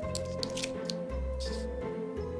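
Slow background music with a long held note over changing low bass notes, and a few short soft rustles of a cloth dabbing on paper in the first second.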